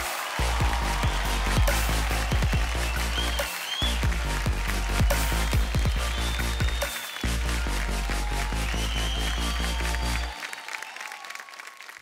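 Background music with a heavy, pulsing bass beat, over applause. The bass drops out near the end.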